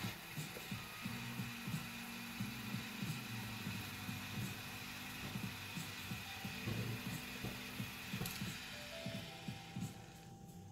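Jetline triple-torch butane lighter hissing steadily while a cigar is puffed to light it, with many short, soft puffs from the smoker's lips at an uneven pace.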